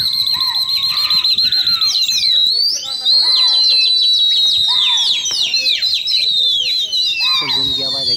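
Several pigeon fanciers whistling loudly at flocks overhead, many shrill whistles overlapping, some warbling in a fast trill during the first two seconds and others swooping up and down. Shouting voices join in near the end.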